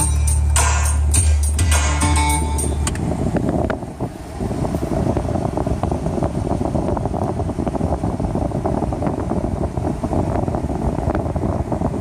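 A song with a heavy bass line plays for about the first three seconds and then cuts off. After it comes a steady, rough rumble of a car idling in the drive-thru lane, heard from inside the car.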